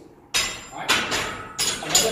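Steel barbell clanking against the metal hooks of a squat rack: four sharp metal knocks, each with a short ring.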